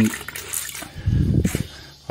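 Water sloshing in a small bucket as a microfiber cloth is dunked and squeezed in it, loudest about a second in.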